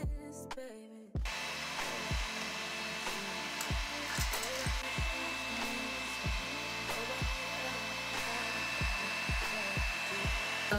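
Small handheld electric fan switched on about a second in and running steadily, a whir with a thin high whine, held over freshly applied eyelash extensions. Background music with a deep, regular beat plays underneath.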